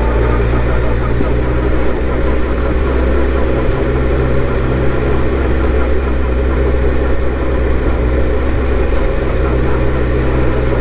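2002 Suzuki GSX-R1000 K2 inline-four engine running steadily at low revs as the motorcycle rolls slowly along.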